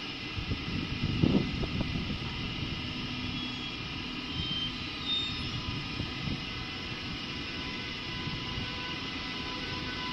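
DB Class 101 electric locomotive pulling slowly into the platform: a steady drone with several steady high tones over a low rumble, and a louder rumble about a second in.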